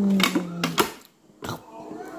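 Several sharp plastic clicks and knocks from a toy oven's door being handled, with a brief silent gap about a second in. A held vocal hum fades out in the first half-second.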